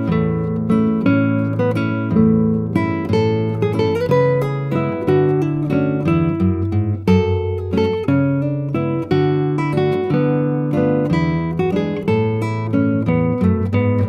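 Instrumental break of a children's song: acoustic guitar playing a lively run of plucked and strummed notes over a bass line, with no singing.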